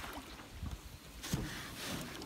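Faint outdoor water ambience around a canoe: soft wind and water noise, with a couple of brief, soft noisy swells about one and a half seconds in and near the end.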